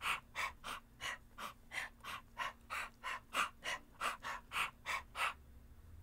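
A man imitating a debarked dog trying to bark: rapid, breathy, voiceless huffs, about three a second, with no voice behind them. They stop a little after five seconds in.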